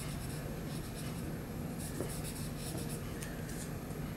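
Pencil sketching on paper: faint scratchy strokes in a few short runs, with pauses between them.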